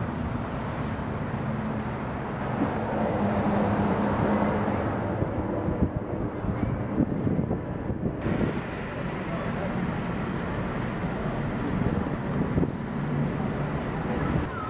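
Outdoor street ambience: road traffic running and passing, with a low engine hum in the first few seconds.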